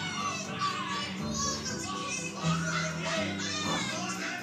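Children shrieking and laughing over recorded music with a steady low accompaniment; the high, wavering cries come in two or three bursts.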